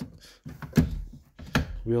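Tilt steering helm on a boat's console being moved by hand: two sharp clunks under a second apart as the wheel is tilted to a new angle, with a low rumble between them.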